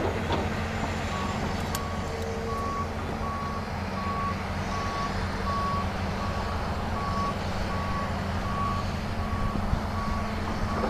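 Heavy earthmoving machine's backup alarm beeping about twice a second, starting about a second in, over the steady low running of diesel engines.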